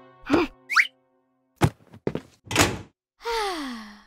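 Cartoon sound effects: a few short thunks, a quick whistle-like glide up and down, and a sharp click about one and a half seconds in. Near the end comes a tone sliding down in pitch.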